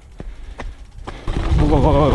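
Dirt jump bike rolling on a dirt trail: a few sharp clicks in the first second, then from a little over a second in a loud, steady rumble of tyres on dirt and wind on the helmet-camera microphone as it rides fast downhill.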